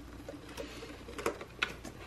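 Paper banknotes being handled and fanned by hand: a few short, crisp rustles and flicks of the bills.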